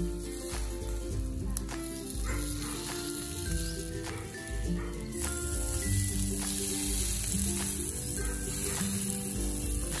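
Pork belly sizzling steadily on a charcoal grill as it is basted with oil, with background music playing over it.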